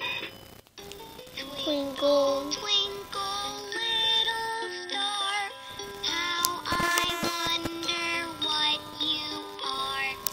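LeapFrog My Pal Violet plush puppy playing a children's song through its small speaker: an electronic melody of short stepped notes with the toy's synthetic singing voice.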